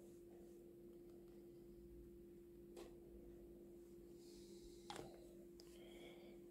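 Near silence: faint room tone with a steady low hum and two soft ticks, about three and five seconds in.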